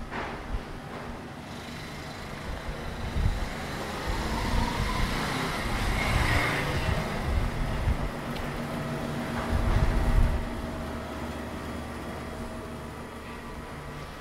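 City side-street traffic sound: a car passing, swelling through the middle and fading, with low rumbles loudest a few seconds before the end.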